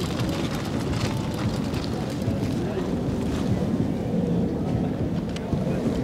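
Outdoor ambience: steady low wind rumble on the microphone with faint, indistinct voices in the background.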